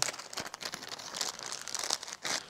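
Small plastic packaging crinkling as it is handled: a clear bag and a reagent powder sachet rustling, with many small irregular crackles.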